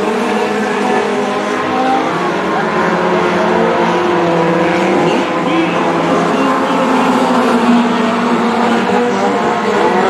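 Several four-cylinder dirt-track stock cars racing together, their engines running hard with overlapping notes that rise and fall as they work around the oval.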